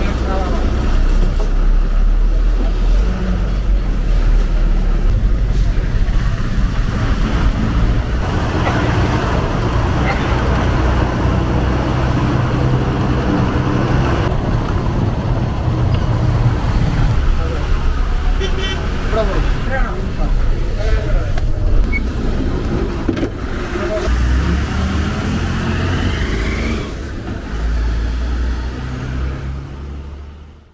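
A KSRTC bus's engine running and pulling away, heard from inside the passenger cabin with road noise. The engine note steps up and down several times as it goes through the gears.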